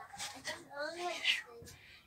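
Quiet speech: a voice talking softly in the room, lower than the narration around it.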